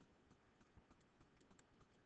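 Near silence with a few faint, scattered clicks of computer input while digital ink is written on screen.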